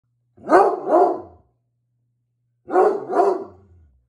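Redbone Coonhound barking in two pairs of barks about two seconds apart. This is alarm barking at a stranger, an exterminator, in the house.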